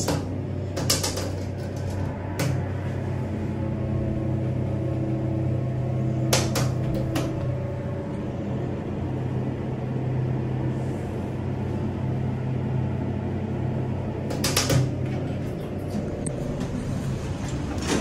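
Elevator car in motion: a steady low machine hum with several held tones, broken by clusters of clicks and clunks about a second in, around six to seven seconds in, and again around fourteen to fifteen seconds in as the car arrives.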